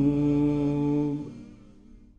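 A man's voice chanting an Arabic supplication, holding a long final note that ends about a second in and fades away.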